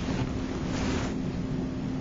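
Steady background hiss with a constant low hum running under it.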